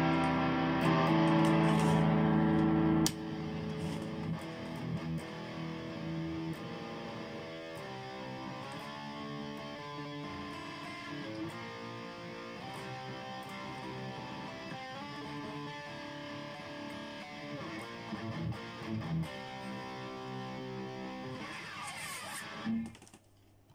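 Electric guitar from a Jackson Dinky-style kit build, played amplified: a loud ringing chord is cut off suddenly about three seconds in, then quieter picked notes and riffs follow for the rest of the passage.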